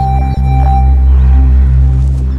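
Background music: a sustained low drone with a held high tone that fades out about halfway through.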